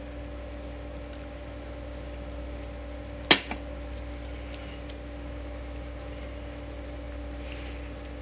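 A steady low machine hum holding two even tones, with one sharp click about three seconds in.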